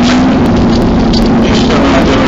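Tram running, heard from inside the car: a loud, steady rumble with a low hum.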